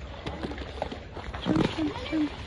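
Brief, indistinct voices of people talking, loudest near the end, over a steady low rumble.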